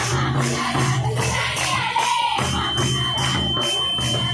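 Live folk dance music: two-headed barrel drums keep a steady beat under jingling percussion and group singing. A steady high tone comes in about halfway through and holds.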